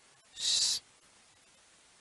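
A single short hiss, about half a second long, a little after the start; otherwise low room tone.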